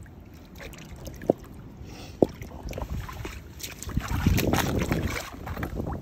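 Shallow seawater sloshing around rocks and rubber boots in a tide pool as someone wades and handles stones, with two sharp clicks about one and two seconds in and a louder stretch of splashing near the end.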